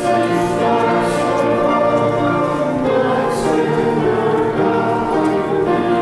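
Choir music: voices singing slow, held chords.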